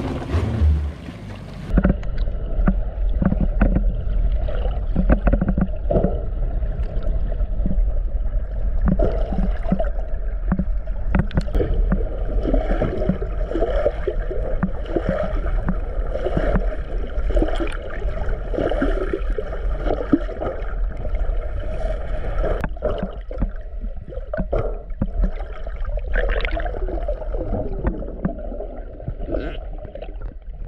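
Muffled sound picked up by a camera underwater: a steady low rumble with irregular gurgling, bubbling and small knocks of water moving past the housing. It takes over a couple of seconds in, after a brief moment of open-air sound.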